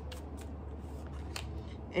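Tarot cards handled by hand as they are drawn from the deck: a few soft snaps and slides of card stock.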